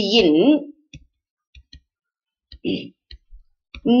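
Scattered light clicks of a stylus tapping on a writing tablet as words are handwritten, after a woman's voice trails off in the first second, with one brief vocal sound in the middle and speech resuming right at the end.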